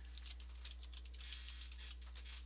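Typing on a computer keyboard: a quick run of key clicks over a steady low hum.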